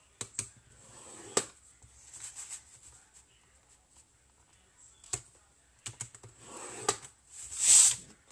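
Bone folder scoring cardstock in the groove of a plastic paper trimmer: scattered light clicks and taps of the tool and trimmer, a faint scrape along the score line, and a louder swish of the card sliding across the trimmer near the end.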